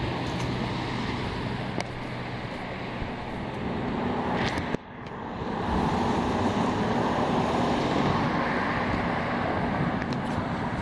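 Street traffic: a steady roadway hum of cars running and passing, with a low engine hum in the first half. The sound drops out briefly about halfway through, then the traffic noise comes back louder.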